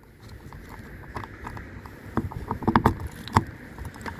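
Small clicks of a key being worked into the lock of a plastic fresh-water filler cap, with the bunch of keys knocking and jangling. A few sharper clicks come about two to three and a half seconds in.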